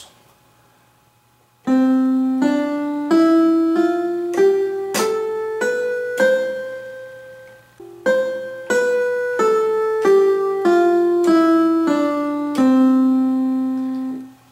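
Electronic keyboard with a piano voice playing a C major scale (do re mi fa sol la si do) one note at a time: up an octave from C starting about two seconds in, then back down at the same even pace, the final low C held.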